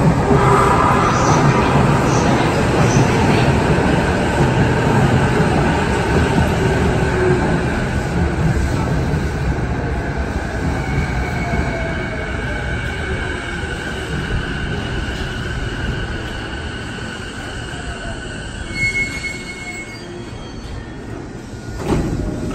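JR East E233-series electric train running into the platform and braking to a stop: the wheel and rail noise fades as it slows, with the traction motors' whine gliding down in pitch. A brief high squeal comes near the end, just before it halts.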